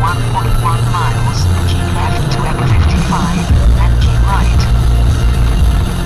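Car radio playing a song, a voice over a stepping bass line, heard inside a moving car with road noise beneath it.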